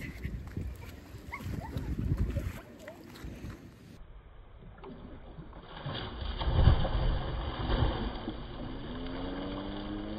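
Water splashing as a child jumps into shallow sea water. Near the end, a person's drawn-out, rising vocal call.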